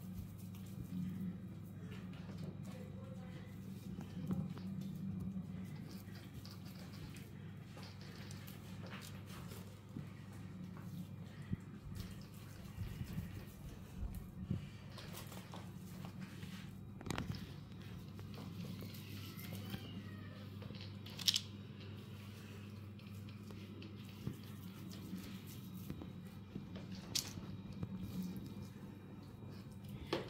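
Wet hands rolling and patting a soft mixture of minced pork and soaked bread into meatballs: faint squishing and patting, with a few sharp clicks, over a steady low hum.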